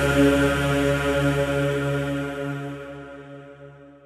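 Slowed, reverb-drenched Urdu noha ending on a long held, droning chanted note that fades out over the last two seconds.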